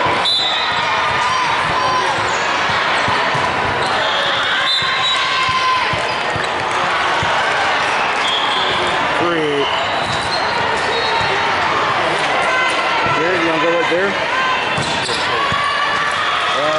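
Busy volleyball-hall din: many overlapping voices calling out, with repeated thuds of balls being struck and bouncing on the hardwood floor, echoing in a large hall.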